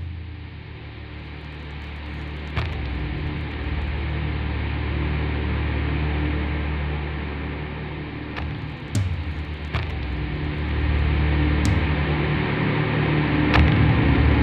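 Low, sustained droning background music that swells, dips about two-thirds of the way through and swells again, with a few faint clicks.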